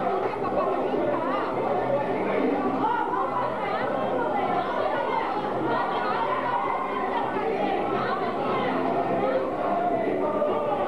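Crowd chatter: many guests' overlapping conversations blending into a continuous babble at an even level, with the reverberation of a large hall.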